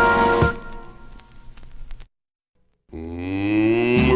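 A brass-band jingle's held final chord stops about half a second in and rings away. After a short silence, a cow moos once, its pitch rising.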